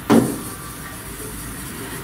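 Room tone: a steady low hum, after a brief syllable of a woman's voice at the very start.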